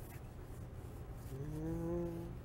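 A man humming a long, steady, thoughtful "hmmm" that starts a little past halfway, over a low steady background hum.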